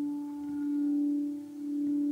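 A singing bowl ringing with one steady low tone and fainter overtones above it. Its loudness swells and fades in slow pulses about a second apart.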